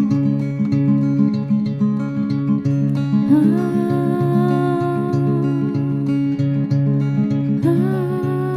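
Acoustic guitar picked in a steady repeating pattern under a wordless hummed vocal line. The voice slides up into a new held note about three seconds in and again just before the end.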